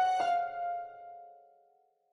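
The backing love song ends on piano: a last note rings and fades away to silence.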